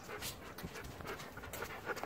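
A Siberian husky panting quietly close to the microphone.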